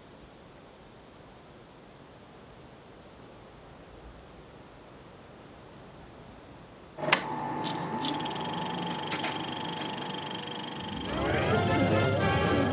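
Faint steady hiss, then about seven seconds in a sudden click and a steady hum with several held tones from an old videotape soundtrack. Music starts near the end.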